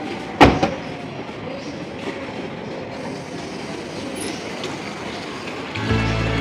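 A car door slams shut about half a second in. Then a steady rolling noise follows as the electric Tata Tigor EV taxi pulls away over paving bricks.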